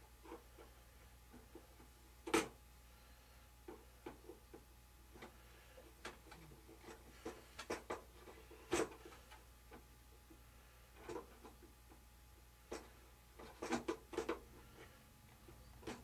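Scattered light clicks and knocks of hands fitting parts on an RC biplane's wing and strut, with two sharper knocks and a quick cluster of clicks near the end, over a low steady hum.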